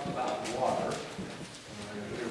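Only speech: a pastor speaking aloud at the front of a church, with faint small clicks.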